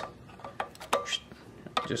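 A screwdriver tip clicking against the slotted screws and aluminium adjustment ring of a Rancilio Kryo 65 espresso grinder's burr carrier: a few light metallic ticks, one followed by a short ring.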